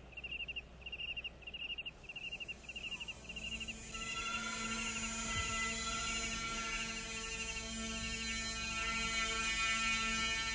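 Regular cricket chirping, about three pulsed chirps every two seconds, over a low hum. About four seconds in, a steady drone with many overtones fades in and slowly swells beneath the chirps.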